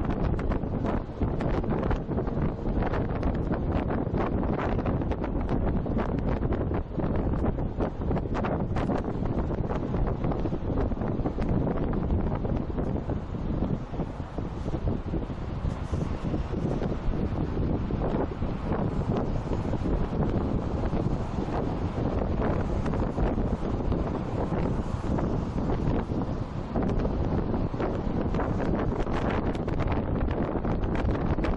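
Steady rumble of a car travelling at speed on an expressway, with wind buffeting the microphone in irregular gusts.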